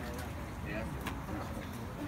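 Outdoor crowd murmur, scattered voices talking quietly, over a steady low rumble.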